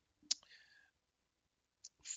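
Two sharp computer-mouse clicks, the first about a third of a second in and a fainter one near the end, with a short soft hiss just after the first.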